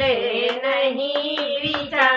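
Women singing a Hindi devotional bhajan without instruments, with about four hand claps keeping time midway.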